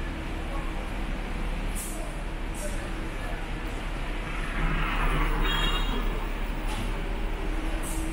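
City street traffic: the steady noise of cars going by, with one vehicle passing louder about halfway through and a brief high squeal as it goes.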